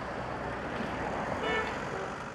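Street traffic: a steady rush of road noise from cars driving past on a city street.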